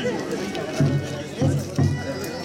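Men's voices talking close by in a procession crowd, in short bursts, with music playing in the background.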